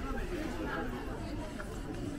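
Chatter of passers-by in a busy pedestrian street: several voices talking at once, no words clear.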